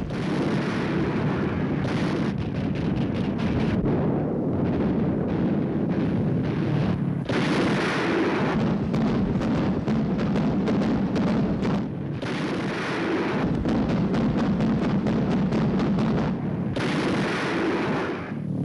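Anti-aircraft guns firing in rapid, overlapping shots, many a second, forming a continuous barrage of gunfire that eases briefly about two-thirds of the way through.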